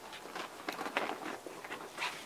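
Hand pruning shears snipping a thin fig shoot close to the stem: a few light clicks with faint handling rustle.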